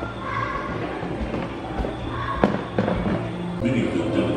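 Indistinct voices in the background, with several low thumps and one sharp knock about two and a half seconds in.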